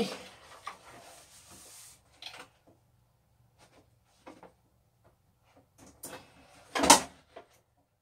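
Light knocks and clatter from a wood-and-glass display case being handled against shelving, with one sharp, loud knock about seven seconds in.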